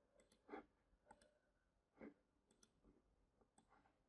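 Near silence with a few faint computer mouse clicks, the clearest about half a second and two seconds in.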